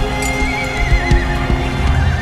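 A horse whinnies once, a wavering call of about a second that falls slightly in pitch, with a few hoof clops, over background music.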